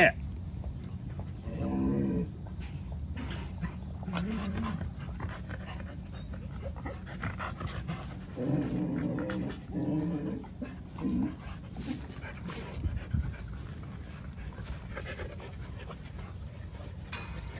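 Jindo dogs grumbling as they crowd and sniff around a puppy, a few short low grumbles about two, four, and nine to eleven seconds in.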